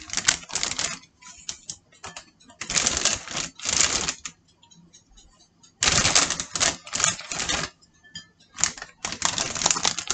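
Crinkly plastic salad bag being handled and shaken as rocket leaves are tipped out of it, in four spells of loud crackling rustle with short quiet gaps between.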